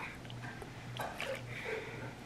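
A person sniffing a fragrance mist bottle held to the nose: faint breathy inhalations.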